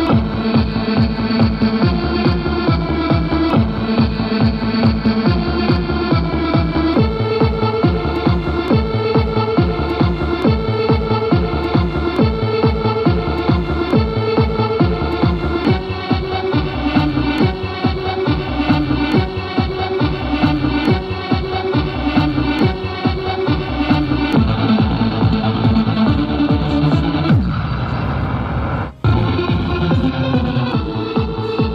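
Elaut E-Claw crane machine's electronic game music with a steady dance beat: first the idle loop that signals the claw is ready, then partway through the loop that plays while the claw moves front and back. Near the end a rising sweep plays, then the sound cuts off abruptly for a moment.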